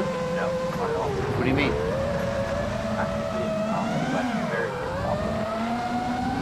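Freestyle FPV quadcopter's brushless motors whining in flight, the pitch rising and falling with throttle. The quad runs Betaflight 4.0.6 with a "high performance" filter tune.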